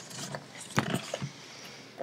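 A few light knocks and clicks of handling, the clearest about a second in, over a faint hiss.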